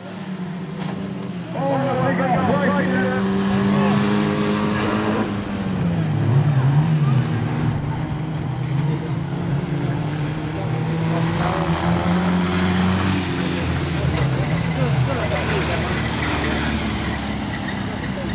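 Modstox stock car engines running as the cars lap a dirt oval, the engine note rising and falling as they go round.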